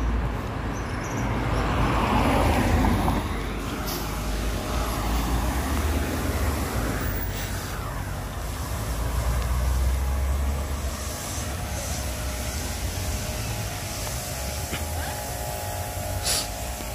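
Outdoor road and traffic noise, with wind rumbling on the microphone in gusts that swell and fade as the camera moves along the street.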